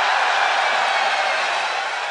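A loud, steady hissing noise with no speech in it, fading away near the end.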